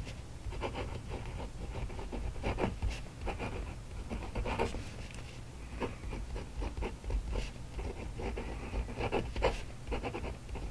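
Extra-fine steel nib of a Kaweco Collection fountain pen scratching across paper as words are written, in short irregular strokes over a low steady hum.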